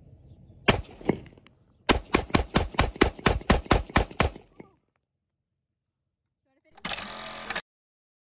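AR-style rifle firing: two single shots about a second in, then a rapid string of about a dozen shots at roughly five a second, as firing resumes after a cleared jam.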